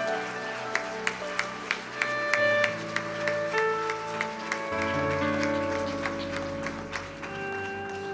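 Soft live worship music: held chords that change every second or so, with scattered hand claps from the congregation.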